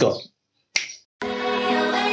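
A single finger snap about three quarters of a second in, then background music with sustained chords starts and plays on.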